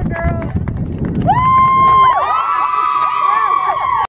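Crowd chatter, then one long high-pitched scream from about a second in, joined at about two seconds by many voices screaming together in celebration.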